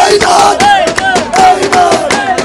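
A watermelon seller's rhythmic chanted sales call, shouted loudly in short repeated phrases, with a crowd of men chanting along and clapping to the beat.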